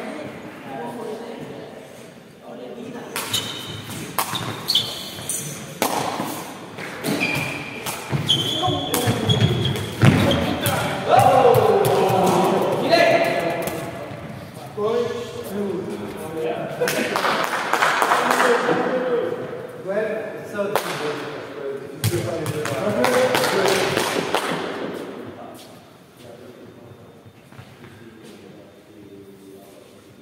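A sepak takraw ball being kicked and struck during play: repeated sharp impacts of the woven synthetic ball, with players' shouts and voices, in a large sports hall. The action dies down near the end.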